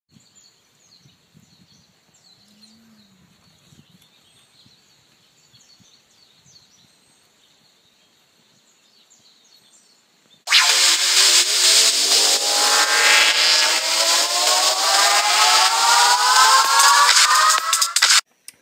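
Faint outdoor quiet with a few bird chirps. About ten seconds in, a loud whirring cuts in suddenly, carrying a whine that rises steadily in pitch, and it stops abruptly at the end.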